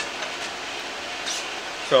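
Steady fan-like hiss of room ventilation, with no clicks or knocks, and a voice starting just at the end.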